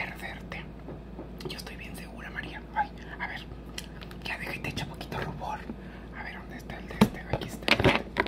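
A woman whispering softly, with small clicks and taps as makeup is handled. The loudest is a sharp tap about seven seconds in, with a few more just before the end.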